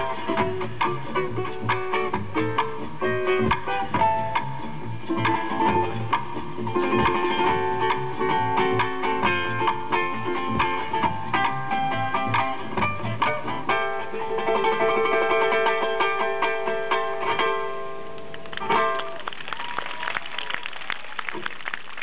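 Solo ukulele played live, with fast plucked melody notes and strummed chords. The piece closes on a final chord about 19 seconds in, followed by audience applause.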